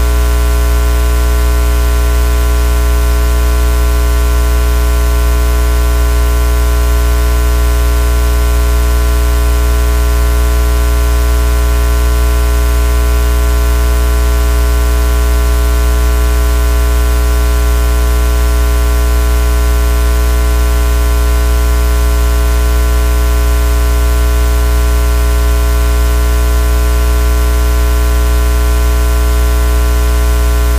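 Loud, unchanging electrical hum with a hiss of static, strongest in the deep bass, on an audio line carrying no programme sound.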